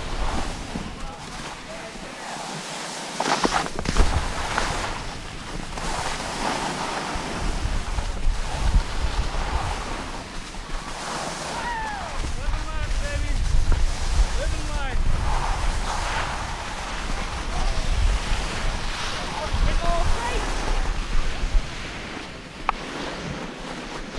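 Skis scraping and hissing over slushy spring snow while skiing moguls, with wind buffeting the microphone in gusts. A sharper, louder scrape comes about four seconds in.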